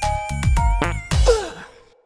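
Children's electronic music with a steady beat breaks off about a second in for a cartoon character's long breathy sigh. The sigh falls in pitch and fades away to near silence.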